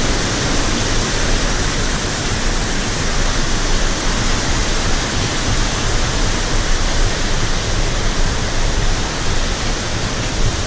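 Rushing water of a cascading mountain stream and waterfall: a loud, steady roar without a break.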